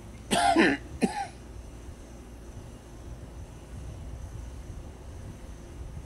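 A person coughing twice near the start: a longer cough, then a short one about half a second later, over a faint steady background.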